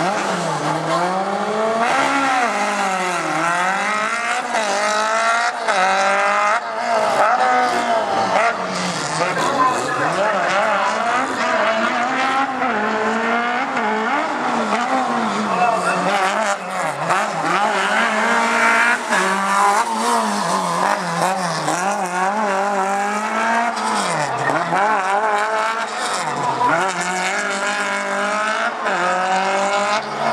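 Alpine A110 rally car's four-cylinder engine revved hard and lifted off again and again through a tight slalom, its pitch climbing and dropping every second or two.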